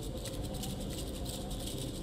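Low, steady background noise with no distinct sound event: room tone in a pause between spoken lines.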